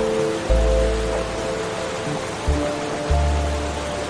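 Slow, soft piano music, with deep bass notes coming in about half a second in and again near the end, over a steady hiss of falling water.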